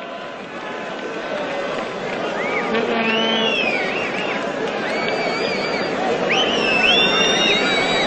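Stadium crowd noise growing steadily louder, with spectators' whistles gliding up and down from a few seconds in.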